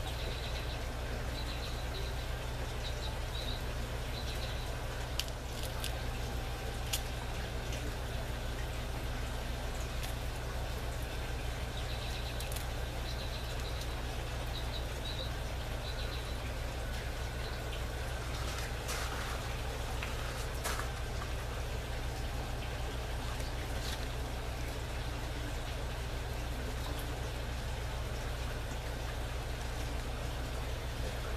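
Steady outdoor background of low hum and even hiss, with a small bird chirping in short runs of high notes near the start and again about twelve seconds in, and a few faint clicks.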